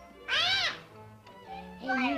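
A young child's short, high-pitched squeal, rising and then falling in pitch, lasting about half a second.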